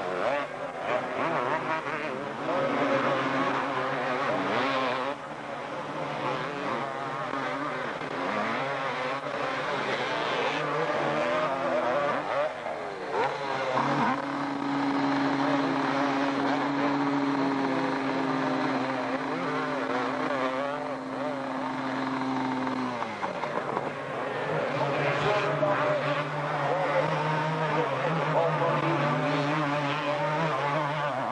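Two-stroke 250cc motocross bikes revving and running through mud, their engine notes rising and falling. In the middle, one engine holds a steady high pitch for about nine seconds, then its pitch falls away.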